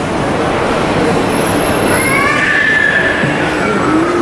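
A train running over the railway viaduct overhead: a loud, steady rumble, with a high wheel squeal rising out of it about halfway through for a second or so.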